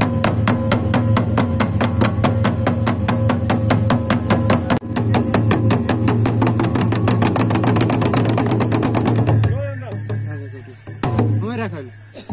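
Several Nepali barrel drums (dhol) beaten with sticks in a fast, driving rhythm that quickens, then stops abruptly about nine and a half seconds in. Voices follow.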